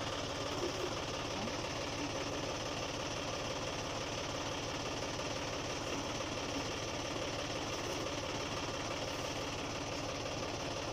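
John Deere tractor's diesel engine idling steadily, with an even, fast rhythmic knock. A couple of light metal knocks come about a second in.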